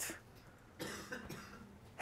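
Near silence with one faint cough a little under a second in.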